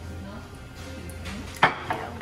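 Background music, with one sharp clack of a bowl set down on a table about one and a half seconds in.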